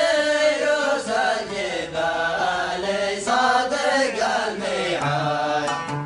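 Men singing an old Yemeni zamil in a chanting style, with an oud accompanying. About five seconds in, the singing stops and the oud comes forward with plucked notes.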